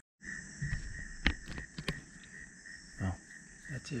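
Night insects, crickets, chirring in a steady, unbroken chorus in the woods after dark. Several sharp clicks and knocks close to the microphone sound over it, the loudest a little over a second in.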